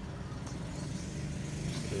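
A steady low hum, like a motor running.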